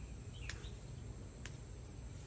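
Summer garden ambience: a steady high-pitched insect trill, with a few short bird chirps and two sharp clicks about a second apart, over a low rumble.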